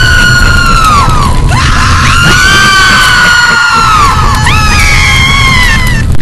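Many voices screaming and wailing together, long cries that slide down in pitch, over a dense low rumble. It cuts in suddenly and loud.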